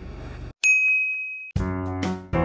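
A single high-pitched ding sound effect that rings for about a second, followed by piano music starting near the end.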